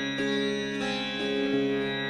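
Instrumental intro: a plucked string melody over a held drone, with a new note about every half second.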